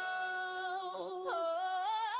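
Background pop music: a single held sung note with the beat dropped out, sliding down in pitch a little over a second in and climbing again near the end.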